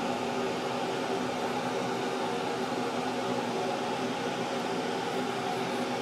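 Steady whir of an air conditioner's fan running: an even hiss with a faint hum underneath, unchanging throughout.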